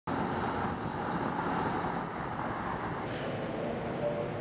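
Steady outdoor background noise: an even rumble and hiss with no distinct events.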